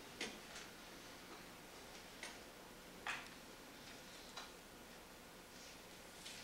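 Quiet room tone with about five faint, irregularly spaced clicks and soft ticks from paper and a ring binder being handled as a page is read.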